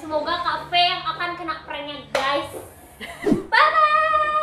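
A woman's voice talking, then a long, steady held tone starting about three and a half seconds in.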